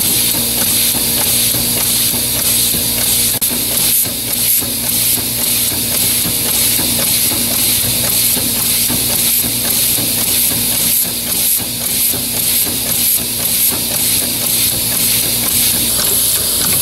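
Homemade compressed-air ram engine running, its valves exhausting air in a loud, steady hiss with a fast pulsing beat from the strokes, over a steady low hum.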